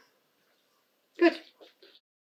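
Near silence, then about a second in a brief, pitched vocal sound from a person, a short sound rather than a clear word, with a couple of faint smaller sounds after it.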